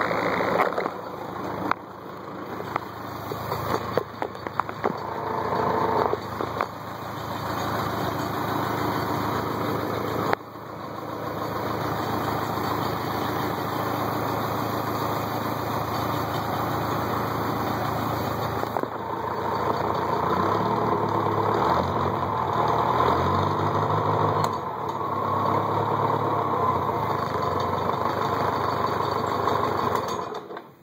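Farmall Cub's four-cylinder flathead engine running steadily shortly after a cold start. The engine note dips briefly about ten seconds in, and its pitch wavers up and down in the second half.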